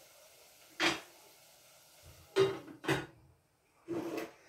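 Three short knocks of kitchen items being handled and set down on a counter: one about a second in, then two about half a second apart.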